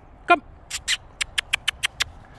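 A person calling a dog with a quick run of sharp mouth clicks, about seven in just over a second, after a short shouted "Come!".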